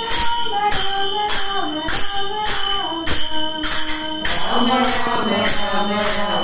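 Group devotional singing of a bhajan, voices holding long notes together, kept in time by small brass hand cymbals (jalra) struck in a steady beat about twice a second, each strike ringing on.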